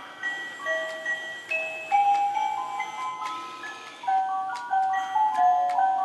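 Animated pop-up Santa-in-a-sack toy playing a tinkling, bell-like electronic tune, one note at a time, with a few sharp clicks mixed in.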